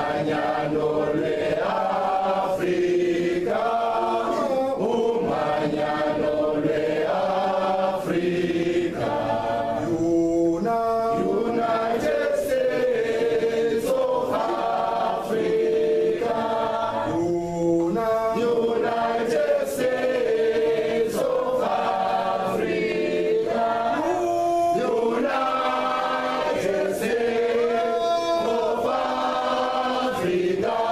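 A group of voices singing together, unaccompanied, in long held notes that rise and fall in a slow melody.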